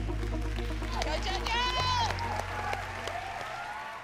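Audience applause over background music, with a voice calling out briefly about halfway through; the music fades away toward the end.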